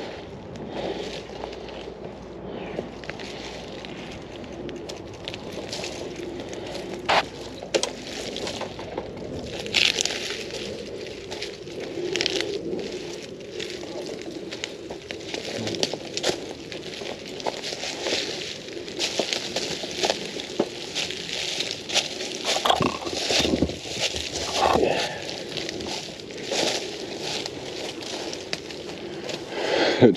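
Mountain bike moving over a dirt trail strewn with dry leaves and twigs: continual crackling and snapping under the knobby tyres, with many sharp clicks and rattles from the bike.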